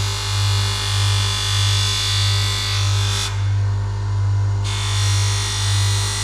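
Small 300-watt electric bench grinder with a flap wheel running with a steady motor hum that swells and fades about twice a second, while a knife blade is drawn lightly along the wheel with a faint hiss that drops out for about a second in the middle. The touch is light and throws no sparks, the way a knife should be ground.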